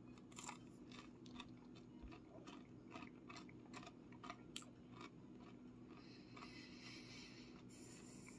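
Faint, crisp crunching of someone chewing oven-baked breaded fish sticks, a run of small sharp crackles about two to three a second, with a soft hiss near the end.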